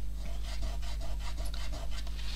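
A soft art crayon rubbed in quick back-and-forth strokes over a painted MDF tag, about six scratchy strokes a second.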